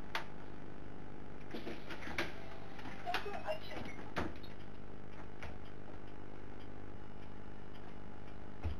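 City bus engine idling steadily, heard from inside the driver's cab, with scattered knocks and clatter as the driver gets up from his seat and moves to the open front door.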